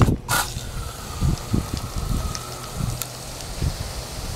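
A garden hose spray nozzle sprays water onto a mulched flower bed with a steady hiss. Wind rumbles on the microphone throughout, and there is a loud, brief burst of noise just after the start.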